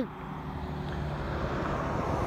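A road vehicle's rushing noise with a low hum, slowly growing louder.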